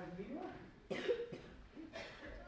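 A person coughs, loud and sudden, about a second in, among quiet voices.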